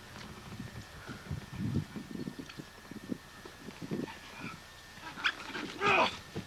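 Wrestlers grappling on a tarp-covered wooden platform: irregular low thuds and scuffs, loudest about two seconds in.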